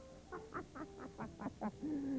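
A voice making a quick run of about seven short pitched sounds in a little over a second, then one falling sound near the end.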